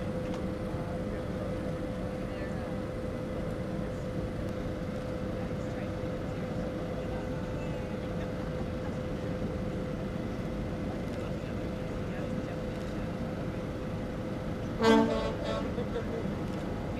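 Steady machinery hum with a constant mid-pitched tone, then a single short, loud horn blast about a second before the end.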